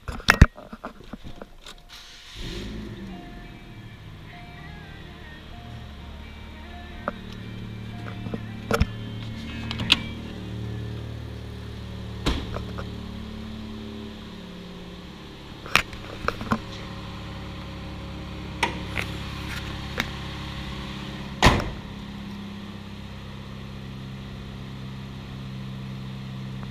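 Chevrolet Cobalt engine starting about two seconds in and then idling steadily, with a dashboard chime beeping evenly for a few seconds after the start. Several sharp knocks and clicks from the car's door and interior come and go.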